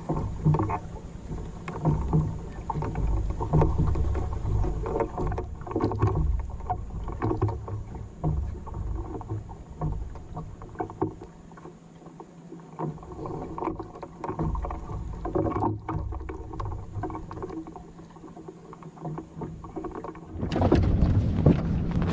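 Water lapping and gurgling against the hull of a small wooden sailing dinghy, a Welsford Navigator, under way in light wind, rising and falling irregularly and easing off briefly twice.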